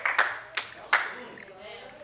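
A run of hand claps, about two or three a second, that stops about a second in, with faint voices behind it.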